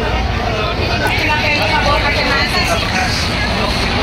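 Voices of several people talking over a steady low rumble.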